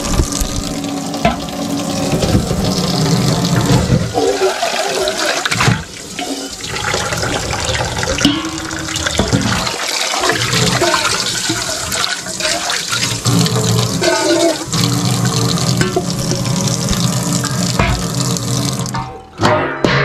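Kitchen faucet running full onto stainless steel dog bowls in a sink as they are rinsed, water rushing and splashing in the metal bowls. The water cuts off near the end.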